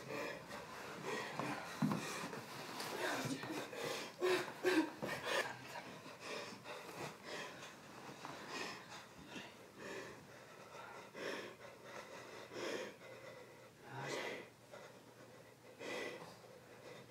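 A woman sobbing with gasping, ragged breaths. The sobbing is heaviest in the first few seconds, then eases into quieter broken breathing, with one more sob near the end.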